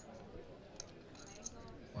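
Faint clicking and clinking of poker chips at the table: a few short, sharp ticks over a quiet murmur of the room.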